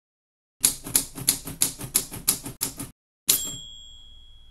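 Typewriter sound effect: a run of about eight keystrokes, roughly three a second, then after a short pause a final strike with the carriage-return bell ringing on and fading.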